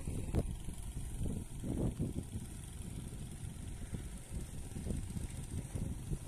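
Low, uneven rumble of wind buffeting the microphone, flaring up briefly just after the start and again about two seconds in, over a faint steady high hiss.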